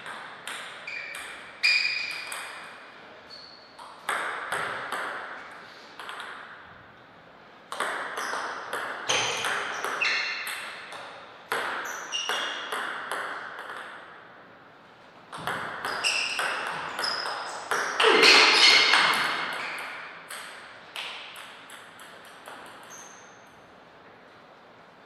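Table tennis ball clicking off rubber-faced paddles and the table in several quick rallies, each hit a sharp click with a short ringing ping. The hits come in bursts of rapid back-and-forth exchanges, with quieter pauses between points.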